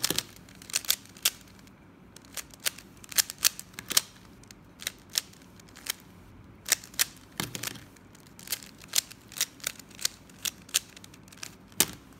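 Plastic speedcube's layers being twisted by hand, a string of sharp, irregular clicks a few per second with short pauses between them.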